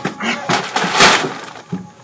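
A string of crashes and knocks, the loudest a sharp smash about a second in that rings off and fades, as things are violently knocked about and broken.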